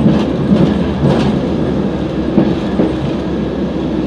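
VR Dm7 'Lättähattu' diesel railbus on the move, heard from inside the cab: steady engine and running noise, with a few wheel clicks over rail joints.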